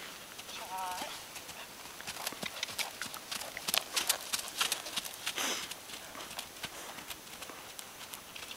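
Hoofbeats of a half-Dartmoor, half-Quarter Horse pony cantering on turf, an uneven run of dull thuds that grows louder in the middle as the pony passes close, then fades as it moves away.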